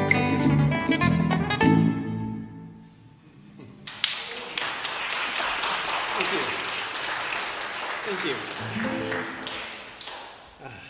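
Solo classical guitar playing the last notes of a piece, which ring out and die away in the first two to three seconds. About four seconds in, audience applause starts and runs until near the end.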